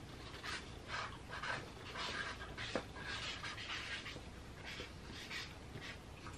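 Dry-erase markers writing on paper: faint, irregular scratchy strokes as two answers are written out.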